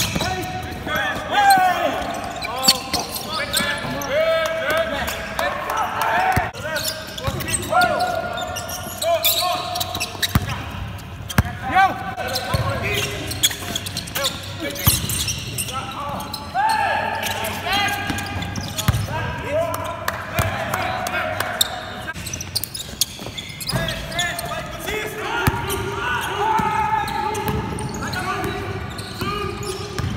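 Basketball practice on a hardwood court: the ball bouncing and being dribbled in irregular thuds, sneakers squeaking, and players calling out to each other.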